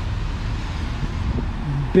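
2021 Ford F-450's diesel engine idling steadily with a low rumble. A man's voice starts just before the end.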